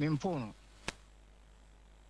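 A voice trails off in the first half second, then a single sharp click just under a second in, followed by quiet studio room tone.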